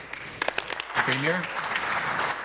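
Applause from members of a legislative chamber, clapping that starts about half a second in and builds, with a short rising call from one voice over it about a second in.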